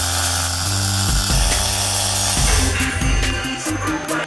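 Wire-feed (MIG) welder arc crackling as a bead is laid on steel plate. It stops about three seconds in, over background music with a steady bass.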